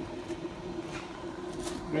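A steady low electrical hum from the powered-up equipment, with a brief soft rustle about a second and a half in.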